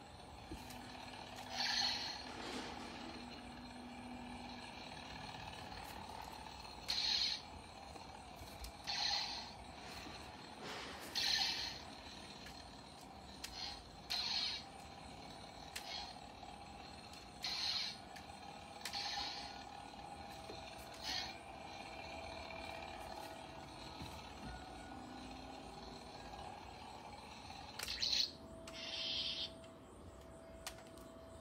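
Toy lightsabers being swung: about a dozen short swishes at irregular intervals over a faint steady hum.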